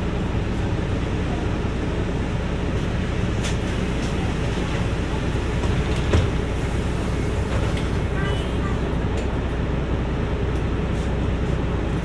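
Steady low rumble of a Mercedes-Benz city bus's engine, heard from inside the passenger cabin while the bus stands nearly still. A single short knock comes about six seconds in.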